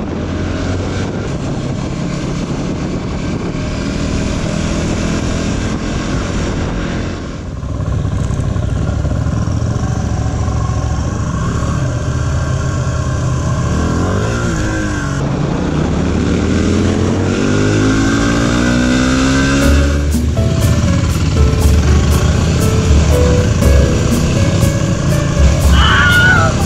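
Off-road motorcycle engines running and revving, with the pitch climbing in sweeps through the middle as the bikes accelerate, mixed with background music.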